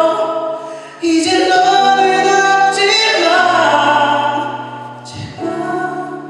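Male vocalist singing a Korean pop ballad live through a handheld microphone, with long held notes over a steady, sustained accompaniment. One phrase ends about a second in and a new one begins; the voice fades near five seconds and another phrase starts just after.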